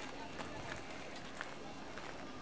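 Outdoor waterfront ambience: faint, distant voices over a steady hiss, with a few short clicks.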